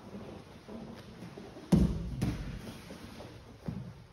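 Bodies and knees landing on a grappling mat: a heavy thud a little before halfway, a second thud about half a second later, and a lighter one near the end.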